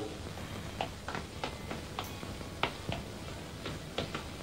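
About ten faint, short clicks or taps at uneven spacing, over low background hiss.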